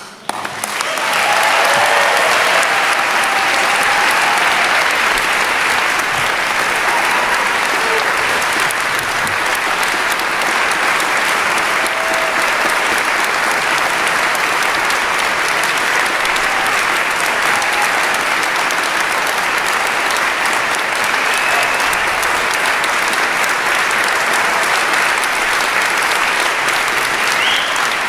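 Large audience applauding, rising to full strength within the first second and then holding steady and loud.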